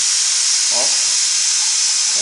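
Loud, steady hiss of compressed air escaping from a dental air compressor while its motor is stopped.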